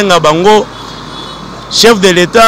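A man speaking loudly and emphatically, breaking off for about a second in the middle, when only a steady hum of street traffic is heard.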